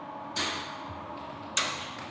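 Electronic parcel locker's latch releasing and its metal door opening: two sharp clacks about a second apart, each fading quickly.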